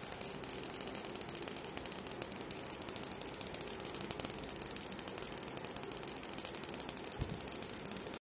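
Homemade spark-gap Tesla coil running: a steady, dense crackle of rapid sparks with a hissing edge.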